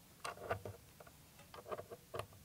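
Faint, irregular clicks and taps of wire leads being fitted onto small terminal posts by hand, several in quick succession near the end.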